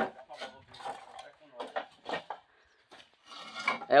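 Bricklayer's steel trowel clinking and scraping against ceramic bricks and mortar: a scattered series of short, sharp taps and scrapes.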